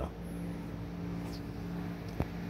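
A steady low machine hum, holding the same pitch throughout.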